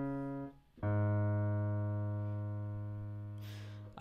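Piano playing a bass line in the low register. One note dies away early, then a single low note is struck about a second in and held, fading slowly for about three seconds.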